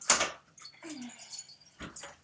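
A dog making a short low whine that falls in pitch about a second in, between a loud rattling burst at the start and a shorter one near the end.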